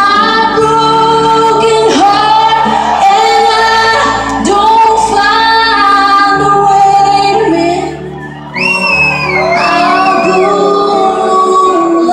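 Live country ballad from a band and singers, recorded from the audience with arena echo: sustained sung notes over a steady bass, with a female voice singing. A high, wavering line comes in about eight and a half seconds in, just after a brief drop in loudness.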